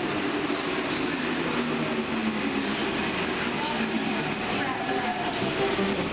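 Paris Métro train in the station: a steady rumble and hiss, with a faint falling whine about four seconds in. Voices of people on the platform are mixed in.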